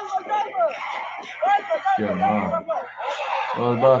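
Men talking and chuckling, with a deeper voice breaking in twice near the end.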